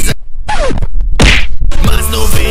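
Edited comedy sound effects in a break in the music: a tone that slides steeply down in pitch about half a second in, then a loud noisy whack about a second later.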